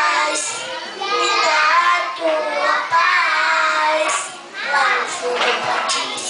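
A young boy singing a Brazilian gospel song into a handheld microphone, with a short break for breath a little after four seconds in.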